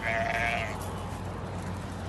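A Harri sheep bleats once, a short call of under a second right at the start, over a steady low background hum.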